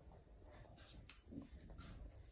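Near silence: faint room tone with a couple of faint light ticks about a second in.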